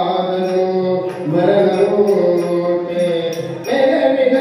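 A man singing a Kannada devotional bhajan in long held phrases, accompanied by harmonium and tabla; a new phrase begins about a second in and another just before the end.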